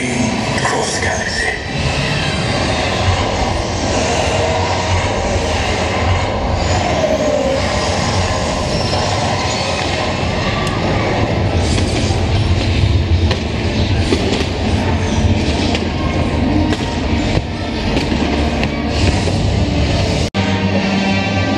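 A fireworks display over an amplified show soundtrack, with a steady deep rumble under music and voices. Many sharp firework bangs come thick and fast through the second half.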